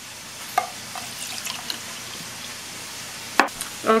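Ground beef and onion sizzling as they brown in a frying pan, a steady hiss, with a few light clicks of a utensil, the sharpest about three and a half seconds in.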